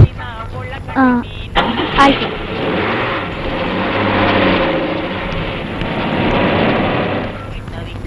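A car door shuts with a sharp bang and a few words are spoken. Then an SUV drives away, its engine and road noise swelling and fading out near the end.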